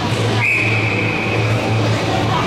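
An ice hockey referee's whistle, one long steady blast of a little over a second starting about half a second in, over a steady low hum.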